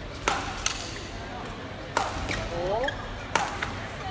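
A badminton rally: sharp cracks of rackets striking the shuttlecock, a quick pair at the start and then about one hit every second and a half, over the steady background of the hall.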